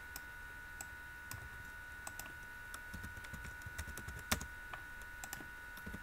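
Computer keyboard keys and mouse buttons clicking sparsely and irregularly, with one louder click a little past four seconds in, over a faint steady high-pitched electrical tone.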